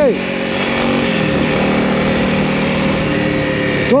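Honda CRF300L's single-cylinder engine running under way, with wind noise over it. Its note drops a little about a second in, then holds steady.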